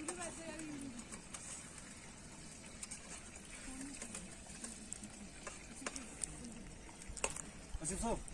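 Faint distant voices talking, with a couple of sharp clicks near the end.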